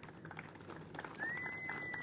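A bird's single high whistled note, held steady for about a second, comes in about a second in, over faint outdoor background noise and a few soft clicks.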